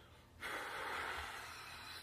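A long breathy exhale that starts about half a second in and eases off slowly.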